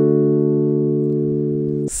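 Digital keyboard playing a D major chord (D–A in the left hand, D–F♯–A in the right), the fifth-degree chord of G major, held steadily and fading slightly before it is released just before the end.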